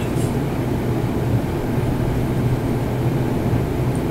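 Steady low hum with a faint even hiss, the background noise of a room; no other event stands out.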